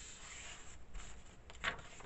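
Paper towel rubbing over the glued edges of a paper page: a faint, dry scuffing, with a short sharper sound near the end.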